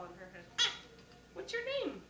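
Newborn baby crying in short wails about a second apart, the second sliding down in pitch at its end.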